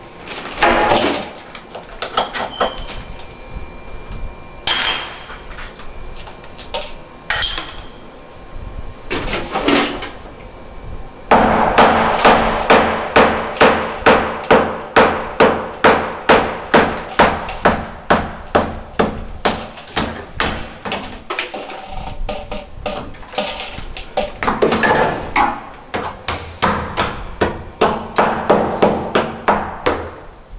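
Hammer blows chipping away ceramic wall tile and the cement wall behind it. A few scattered strikes come first, then from about a third of the way in a steady run of about two blows a second, a short pause, and another run of blows near the end.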